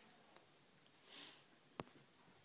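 Near silence, broken by a short sniff about a second in and a single sharp click near the end.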